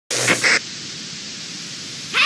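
Television static: an even hiss of white noise. It opens with a louder noisy half-second, then settles to a steady lower hiss.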